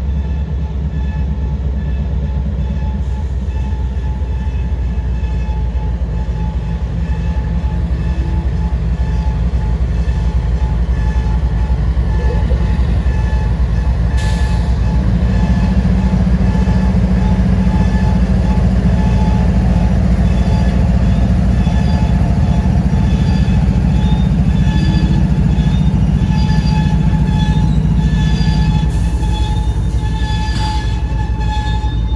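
CSX diesel locomotive's engine running with a heavy low rumble as it rolls slowly past, pulling a heavy-load train, growing louder about halfway through as the locomotive comes alongside.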